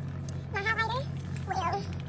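A woman's voice makes two short pitched vocal sounds with no words. The first, about half a second in, wavers and rises; the second, shorter, comes about a second and a half in. Both sit over a steady low hum.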